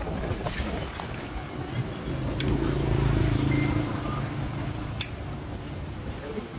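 Hand-held key-cutting pliers clicking sharply as they punch notches into a brass vehicle key blade, two clicks a couple of seconds apart. Underneath, a vehicle engine hums, swelling to its loudest in the middle.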